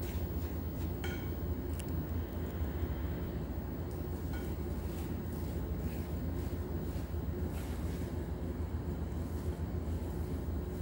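A spatula stirring thick oat cookie dough in a glass mixing bowl, with soft scrapes and a few light clicks against the glass, over a steady low hum.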